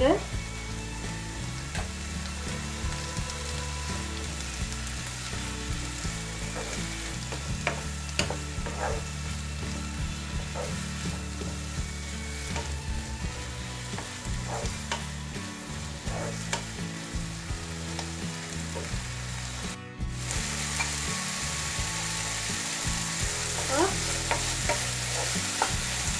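Chopped onion and tomato sizzling as they fry in a nonstick wok, stirred with a wooden spatula that scrapes and knocks against the pan now and then. The sound drops out briefly about twenty seconds in and comes back a little louder.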